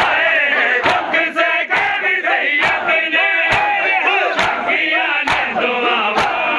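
A group of men chanting a noha (mourning lament) together, with matam: open hands slapping bare chests in an even beat, a little under once a second.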